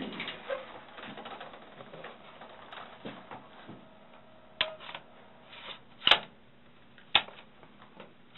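Handling noise: scattered light clicks and taps of objects being moved on a table, with three sharper clicks in the second half.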